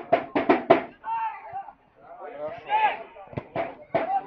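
Men's voices shouting at a football match. It opens with a quick run of short, sharp beats, about five a second, and there are two sharp knocks a little before the end.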